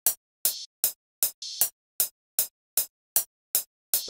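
Software metronome clicking steadily about two and a half times a second, with an open hi-hat sample played over it twice in the first half, each hit a longer hiss than the clicks.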